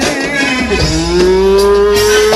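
Live amplified Egyptian mahraganat music: a male singer holds one long note through a microphone, the pitch sliding slowly upward, over keyboard and percussion accompaniment.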